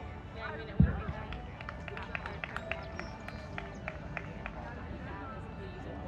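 Outdoor spectator murmur with distant voices. A single dull, low thump comes about a second in, then about a dozen sharp snaps follow over the next two seconds.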